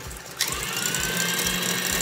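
KitchenAid stand mixer motor running with its wire whip beating egg whites and sugar into meringue. About half a second in it gets louder, and its whine rises and then holds a steady high pitch.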